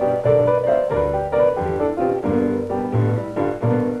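Instrumental break on a 1946 78 rpm blues record: piano playing between the sung lines, backed by guitar and string bass.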